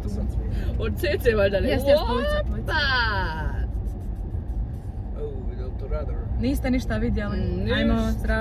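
Steady low rumble of a car driving, heard inside the cabin, with voices and some music over it. A falling vocal glide comes about three seconds in.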